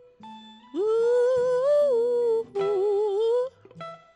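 Slow live band music: a woman sings two long wordless notes with vibrato, the first held for nearly two seconds, over sparse clean notes from a semi-hollow electric guitar.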